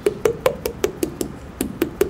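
Fingers tapping the neck under the jaw while the mouth is held open in a vowel shape, about five hollow, pitched taps a second. Each tap rings at the vocal tract's first-formant resonance for that vowel.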